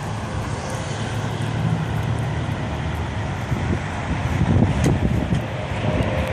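Steady low rumble of vehicle engines and road traffic.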